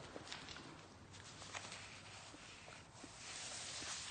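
Faint footsteps and scuffs on a tiled floor strewn with plaster debris, with a louder hiss near the end.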